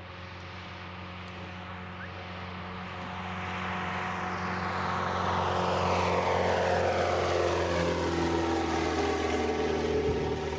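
A propeller-driven radio-controlled model airplane approaches and flies low past, growing steadily louder. Its engine pitch falls as it goes by in the second half.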